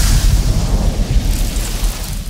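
Trailer sound effect for a title reveal: a deep rumble under a noisy hiss, dying away slowly after a hit.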